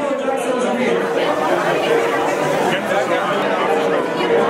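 Crowd chatter: many voices talking at once, none standing out, with a few short steady tones sounding over the hubbub.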